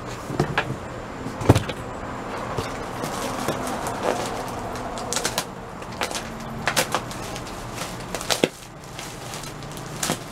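Clear plastic bag of Styrofoam packing material being handled and squeezed: a continuous crinkling rustle with scattered sharp crackles, the loudest about a second and a half in.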